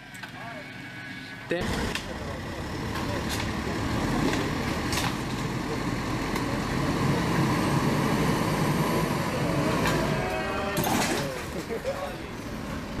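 A motor vehicle's engine running steadily under load, with rough noise. It cuts in abruptly about a second and a half in and gives way to voices near the end.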